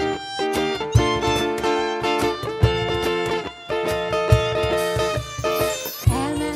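Violin playing a melody over strummed acoustic guitar chords in a steady rhythm: an instrumental passage between sung verses.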